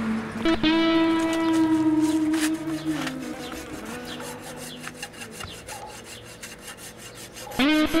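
Steel hoof rasp filing a horse's hoof in a quick run of repeated scraping strokes. It runs under background music with long held notes that is loudest in the first few seconds, with a sliding note near the end.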